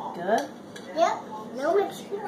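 A spoon clinking against a bowl as a toddler is fed from it, with a few short wordless voice sounds.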